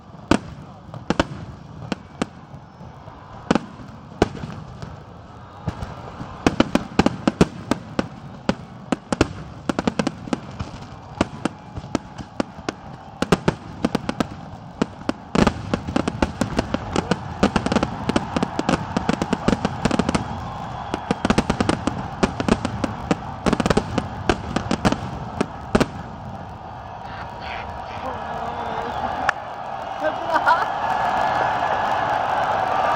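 Fireworks display: aerial shells bursting in rapid, irregular bangs and crackles, growing denser after the first few seconds.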